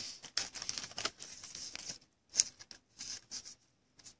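A trading card being worked into a tight plastic card sleeve: light, broken plastic rustling and scraping, with one sharper crackle about two and a half seconds in.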